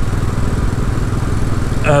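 Royal Enfield Classic 500's single-cylinder engine running steadily under way, its exhaust beat an even, rapid pulse.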